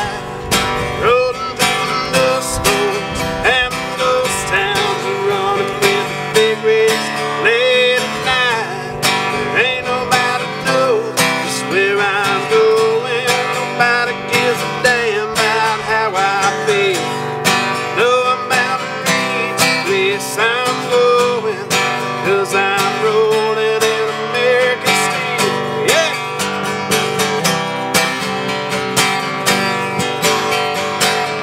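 Acoustic guitar strummed in a country song, with a wavering, sliding melody line carried over the chords.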